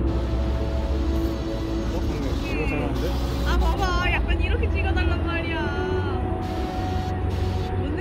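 Busy city street at night: a steady low rumble of traffic, with voices of passers-by and music with held notes mixed in, the voices clearest in the middle.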